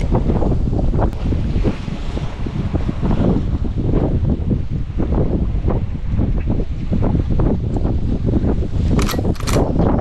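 Wind buffeting the microphone over the rush of open sea and waves, a loud, gusting rumble. About nine seconds in there are a few brief sharp sounds.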